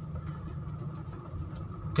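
Steady low hum of a car's running engine, heard from inside the cabin.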